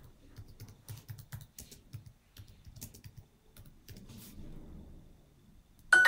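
Typing on a computer keyboard: a quick run of key clicks that trails off, then near the end a bright chime rings out, the app's signal for a correct answer.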